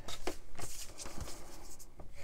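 Bone folder drawn along a fold in a strip of scrapbook paper to crease it: a dry papery scraping that comes and goes in short strokes.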